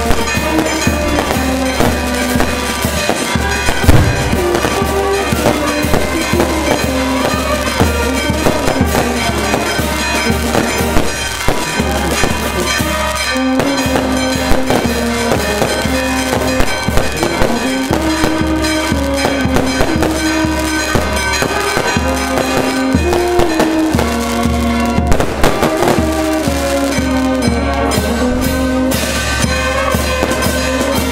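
Fireworks bursting overhead in a rapid, continuous run of cracks and bangs, over a brass band playing held notes of a slow tune.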